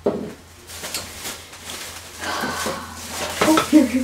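Plastic shopping bag rustling as items are pulled out of it, with a few light knocks.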